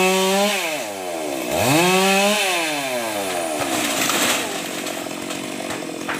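Chainsaw engine revving high, dropping off briefly about half a second in, revving up again, then easing off the throttle and winding down from about two and a half seconds in.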